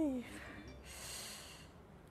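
A woman's voiced 'mm' trailing off, then one breathy exhale of about a second through pain.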